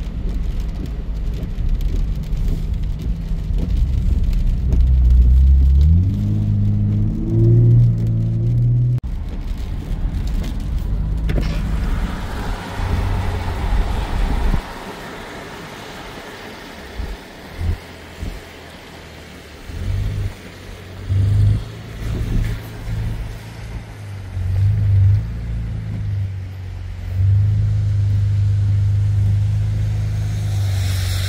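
Car driving on a wet road, heard from inside the cabin: a low road and engine rumble, with the engine note rising about five to eight seconds in. It turns quieter after about fifteen seconds, broken by short low rumbles that come and go.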